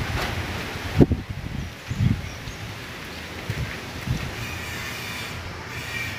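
Gusty wind rumbling on the microphone in uneven surges, the strongest about a second in, with trees rustling.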